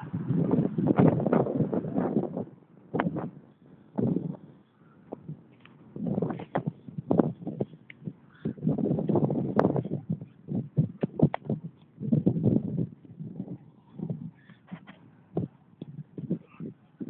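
Handling noise on a handheld phone's microphone while walking: bursts of rubbing and rumble a second or two long, with scattered sharp clicks and knocks in between.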